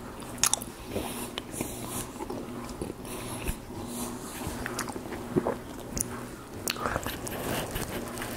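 Close-miked wet chewing of a sausage, egg and cheese bagel sandwich: irregular smacks and clicks of the mouth and teeth on the bread.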